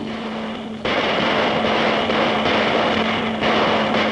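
Dense, noisy din of Chinese New Year firecrackers with drums and clashing cymbals for a dragon dance. It starts abruptly about a second in and stays loud.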